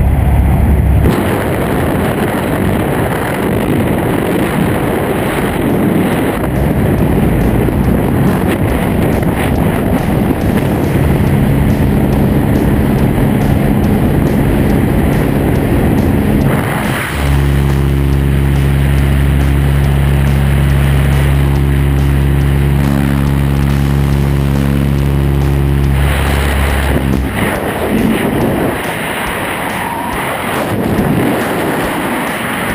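Single-engine light aircraft's engine and propeller droning steadily inside the cabin, with wind noise through the open door. Near the end the steady drone stops and gives way to an even rushing wind as the tandem skydivers leave the plane and fall.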